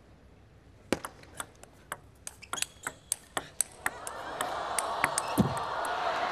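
Table tennis rally: the ball clicks sharply and quickly off bats and table for about three seconds. As the point ends, the crowd noise swells, with cheering and clapping.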